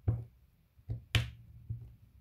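A diamond-painting drill pen clicking as square resin drills are picked from the tray and pressed onto the canvas: about four short, sharp clicks, the loudest a little after one second in.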